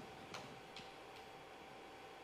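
Near silence: quiet room tone with a faint steady hum and three faint clicks about 0.4 s apart in the first second.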